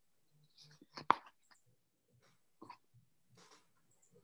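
Quiet pause at a close computer microphone: faint breaths and small mouth sounds, with one short sharp click about a second in.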